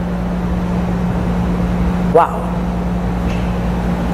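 Steady low hum with a rumble beneath it, the background noise of the hall. A man's short exclamation, "Waouh!", comes about two seconds in.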